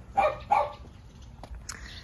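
A dog barking twice in quick succession, two short sharp barks in the first half-second or so.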